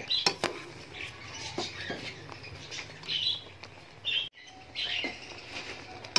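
Jaggery syrup with whole potatoes boiling in a pot, a steady bubbling hiss, with a few light clicks of a spatula against the pot near the start. The syrup is reducing toward its finished thick stage.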